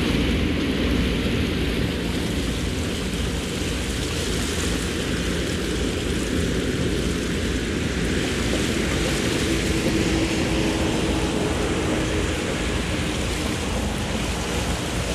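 Steady low drone of a Sea Ray Sundancer's Mercruiser 7.4 inboard engine at slow cruising speed, under an even rush of water and wind.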